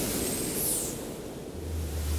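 Intro-animation sound effect: a steady rush of noise with a deep rumble under it, a high swoosh sweeping down about two-thirds of a second in, and the rumble swelling near the end.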